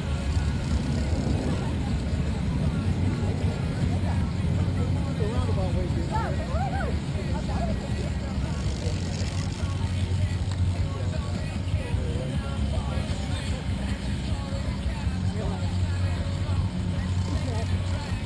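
Steady low rumble of wind buffeting an outdoor camera microphone, with faint distant voices of spectators underneath.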